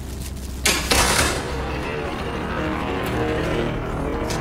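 A sudden loud burst of noise a little over half a second in, followed by a steady low rumble under dramatic background music.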